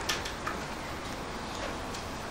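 Quiet room noise with a few light clicks: a couple near the start, one about half a second in and one near the end.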